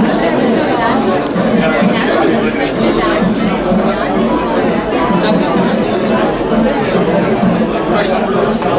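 Indistinct chatter: several people talking over one another in a room.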